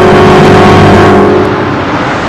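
A loud dramatic swoosh of noise over a held musical tone, a scene-transition sound effect that swells and then fades about one and a half seconds in.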